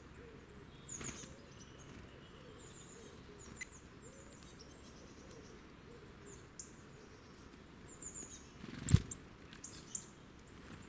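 Small woodland birds giving short, high-pitched chirps and downward-sliding call notes, scattered through, with a sharp thump about nine seconds in that is the loudest sound.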